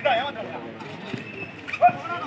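Two sharp shouts over a steady crowd murmur, one at the very start and a louder one near the end, from the kabaddi court as defenders close in on a raider.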